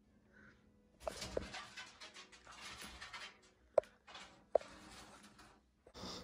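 Faint scratching and scrabbling from an animal trapped inside a wood-burning stove or its flue pipe, starting about a second in, with a few sharp clicks near the start and around the four-second mark.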